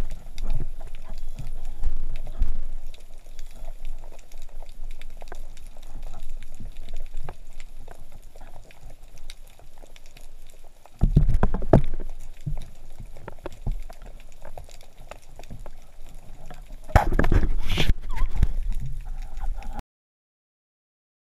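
Underwater sound picked up by a GoPro in its waterproof housing: a steady fizz of fine clicks and water noise, with two louder bursts of bubbling and rushing water, one about eleven seconds in and another near the end.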